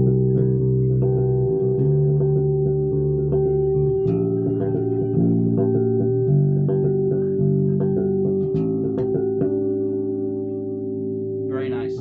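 Dragonfly CJ5 five-string electric bass played fingerstyle with its active electronics switched on: several notes ringing together as sustained chords and double-stops, the notes changing every second or two.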